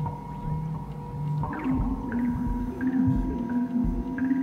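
Improvised ambient music from processed electric guitar and electronics: steady high drones, then low sliding pitches coming in about a second and a half in and settling into a held low tone.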